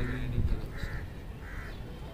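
A crow cawing twice, two short harsh calls a little under a second apart.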